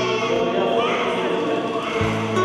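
Music: a choir singing sustained chords.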